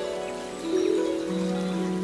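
Harp playing slow notes that ring on, with a couple of new, lower notes plucked partway through.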